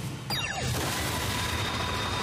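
Anime soundtrack effect of a player bursting into a sprint: a dense rushing sound with a low rumble and a quick falling swish about a third of a second in, with faint music under it.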